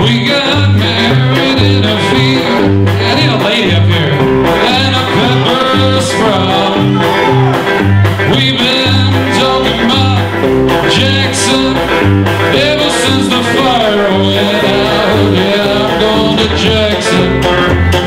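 Live country band playing: a Telecaster-style electric guitar over an upright bass stepping from note to note in a steady beat, with drums.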